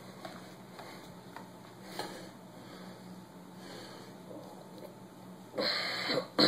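Faint sloshing and handling of liquid in a plastic jug as the baking soda and peroxide mix is shaken, over a low steady hum. Near the end comes a short, loud rush of noise.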